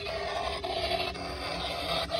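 Sound effects from a Halloween yard display: a continuous rasping, growl-like noise.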